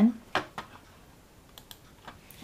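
A few separate computer keyboard keystrokes, typing the closing parenthesis of a spreadsheet formula, with pauses between them.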